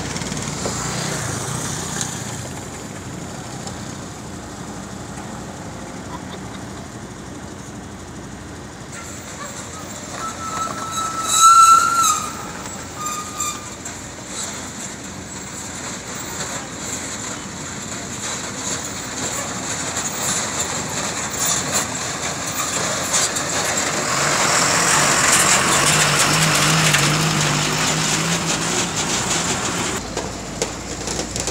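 Cars passing on a road, with a short, loud, high pitched tone about twelve seconds in, and an engine growing louder toward the end.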